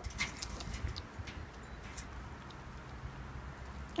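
Faint background noise with a few light clicks and rustles near the start and again about halfway, from hands handling plush toys and dried potpourri pieces.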